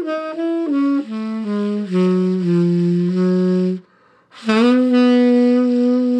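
Unaccompanied tenor saxophone playing a slow melodic line: a few quick notes stepping downward, then low held notes. A short breath pause comes about four seconds in, and a new phrase opens with a scoop up into a long held note.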